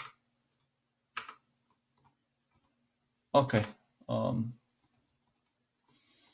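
Computer mouse clicks: a sharp click at the start, another about a second in, and a few faint ticks after.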